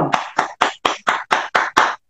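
A person clapping their hands in a quick, even rhythm: about eight claps, roughly four a second.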